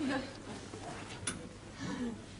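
Quiet stretch of room sound between brief fragments of speech at the start and near the end, with a single sharp click just over a second in.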